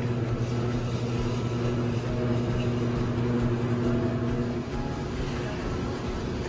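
Steady low hum of running ventilation fans. A few faint held tones join it for a couple of seconds in the middle.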